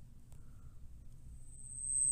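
Faint low hum and hiss of the recording's background, with a thin, high-pitched steady whine coming in near the end.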